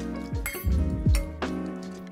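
Background music over a metal spoon clinking against a stainless steel mixing bowl of chestnuts in water.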